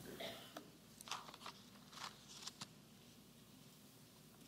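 Several short, faint rustles of thin Bible pages being turned by hand.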